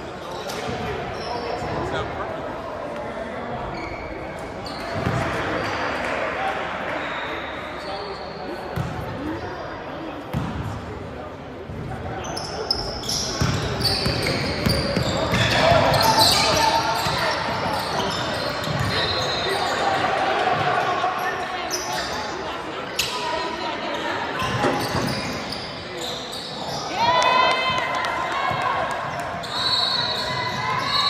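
A basketball bouncing on a hardwood gym floor during live play, with players' and spectators' voices echoing through the large hall. There is a brief cluster of high shoe squeaks near the end.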